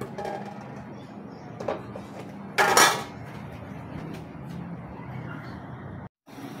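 A glass pot lid being picked up with a couple of light knocks, then set down onto a metal wok with one loud clatter about three seconds in, over steady background noise.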